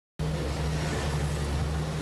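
ERA AC Cobra replica's V8 engine running steadily, with no revving.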